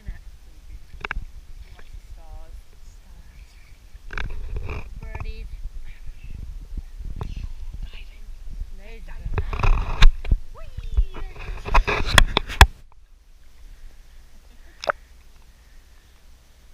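Lake water splashing and lapping against a camera held at the water surface, with sharp slaps and clicks, loudest from about four to thirteen seconds in, then cutting off suddenly. A single click comes near the end, and faint voices murmur in places.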